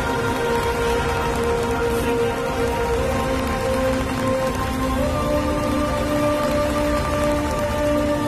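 Steady audience applause over music of long held chords that move to new notes about three and five seconds in.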